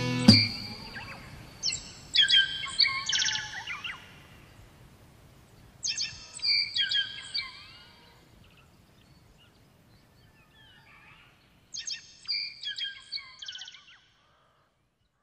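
A songbird singing three short phrases of quick, high notes a few seconds apart. Just after the start the last guitar chord of the song cuts off.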